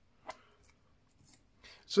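Faint handling noise from a rugged smartphone being turned over in the hands: one short sharp click about a quarter second in, then a few softer ticks and rustles.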